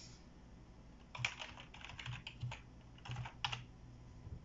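Typing on a computer keyboard: a quick run of key clicks that starts about a second in and stops shortly before the end.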